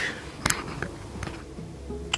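Light metallic clicks from hands handling a rear brake caliper: a sharp one about half a second in and a fainter one just after. A faint steady low hum follows.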